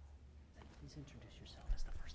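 Quiet room tone with a steady low hum. Faint whispered voices come in about half a second in, and there is a sharp low thump near the end.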